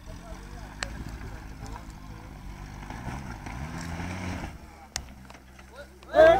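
Suzuki 4x4's engine working hard up a steep dirt climb, its revs rising and falling, then easing off about four and a half seconds in. Two sharp knocks are heard, about a second in and near the end.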